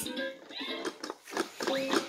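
Electronic toy farm barn playing a simple stepped melody of electronic notes, with a few plastic clicks as its pieces are handled and a short gliding sound near the end.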